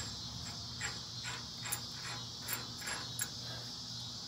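Faint, scattered light metal clicks from a trailer axle's spindle nut and locking-tab washer being handled at the hub, over a steady high chirring of insects.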